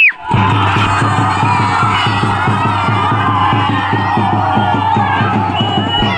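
Fast, steady drumming for a festival procession, with a crowd shouting and cheering over it.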